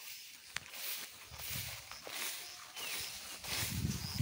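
Footsteps through tall pasture grass, the grass swishing and rustling against the legs in uneven swells, with one sharp click about half a second in.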